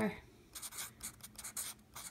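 Felt-tip permanent marker (a Sharpie) writing on lined notebook paper: a string of short, scratchy pen strokes starting about half a second in.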